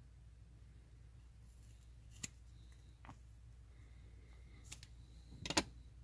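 Small scissors snipping through a clump of bucktail hair at the base: a few faint, sharp snips spaced a second or more apart, the loudest cluster shortly before the end.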